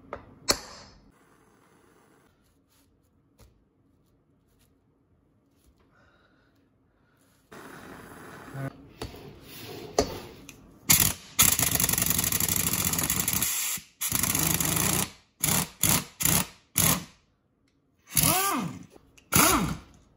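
A single hammer strike on a hand impact driver set in a motorcycle brake-rotor bolt, then a pneumatic impact wrench working the rotor bolts loose: one long run followed by several short bursts, the last one whining down and back up in pitch.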